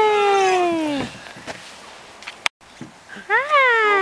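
A long drawn-out vocal call that falls slowly in pitch and cuts off about a second in; after a short break a second call rises briefly and then slides down near the end.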